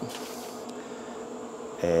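Steady buzzing hum of a running Pit Boss pellet grill, its combustion fan and motor working while the grill smokes.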